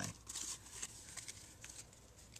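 Faint rustling and a few light clicks of playing cards being squared up and turned over in the hands, dying away near the end.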